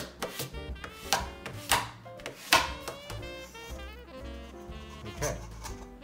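Background swing-jazz music with saxophone and brass, over a few sharp scraping strokes of a bone folder rubbing paper onto foam board.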